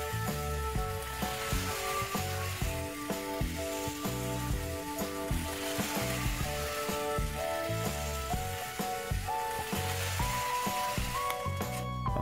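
Background music over the steady hiss of a Railking CC206 HO-scale remote-control model locomotive running on plastic track. The running noise fades out near the end as the locomotive pulls up.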